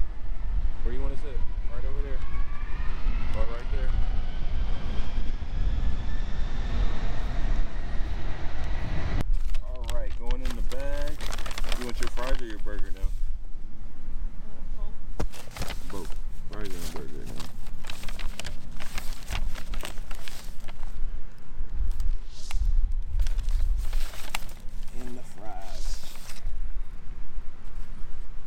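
A jet airliner flying low overhead on its approach to land, its engine whine rising in pitch over a steady low rumble for about nine seconds before cutting off abruptly. After that come voices and the crinkling of a paper takeout bag being opened.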